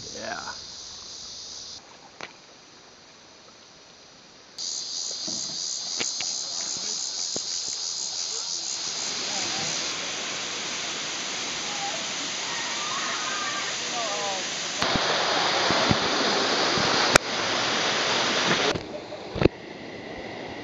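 Waterfall rushing steadily, getting fuller about halfway through and louder still for the last few seconds. Insects buzz with a pulsing high drone in the first half, and there is one sharp click a few seconds before the end.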